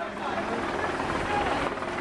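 A steady rushing, rumbling noise over faint crowd voices.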